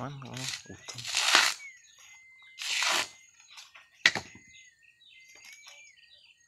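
Coconut husk being torn off a nut on a metal husking spike: two loud rasping tearing bursts, about a second in and near three seconds, then a sharp knock about four seconds in.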